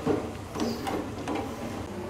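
Light kitchen handling noises: a few soft knocks and scrapes as a plastic bowl is moved away from an aluminium pot on a gas stove.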